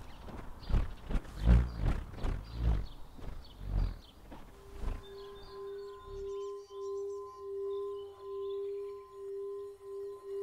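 A bullroarer whirring in rhythmic pulses, two to three a second, which die away about six seconds in. From about five seconds in, a steady ringing tone takes over, swelling and fading about once a second.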